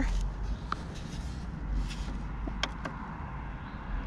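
Handling noise of gear being moved around in a car's back seat: a low rumble with a few light clicks.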